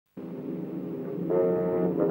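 Opening-title music of a 1940s film soundtrack: a held chord that starts suddenly, with higher parts joining about a second in and the music growing louder.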